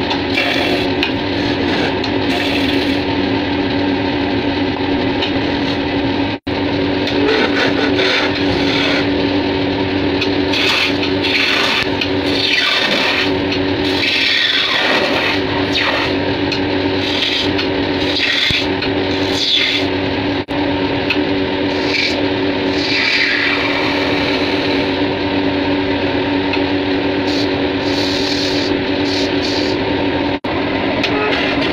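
Wood lathe motor running with a steady hum while a turning chisel cuts into the spinning wood, a continuous scraping and rasping that rises and falls as the tool is worked along the piece. The sound cuts out briefly twice.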